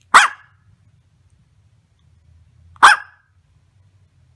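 A small dog barking twice, two single sharp barks about two and a half seconds apart, one just after the start and one near three seconds in.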